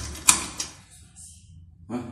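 A door being shut: one sharp bang about a third of a second in that dies away within about half a second.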